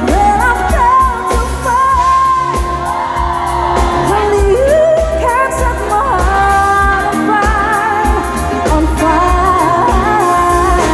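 Live pop band: a woman singing a melody with long held notes into a microphone, over electric bass guitar and a drum kit.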